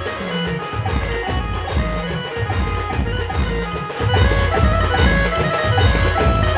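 Loud live band music for dancing: a bright repeating melody over a heavy drum and bass beat, swelling a little louder about four seconds in.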